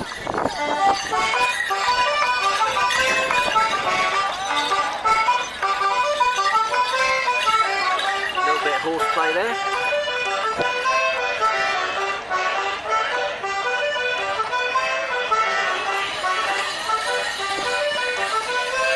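Traditional Morris dance tune played on a squeezebox (accordion-type), a steady run of quick, evenly paced notes.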